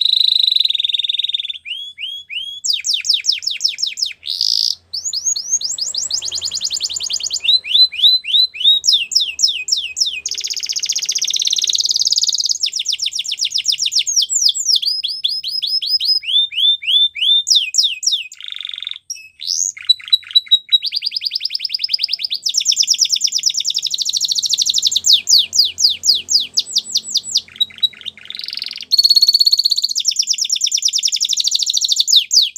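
Belgian canary singing a continuous song of fast trills. Each run of rapidly repeated notes lasts a second or two before it switches to a new pattern, with only brief pauses.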